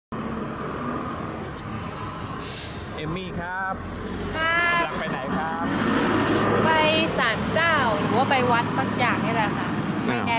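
Steady traffic noise on a city street, with a short hiss about two and a half seconds in. Voices talk over it from about three seconds on.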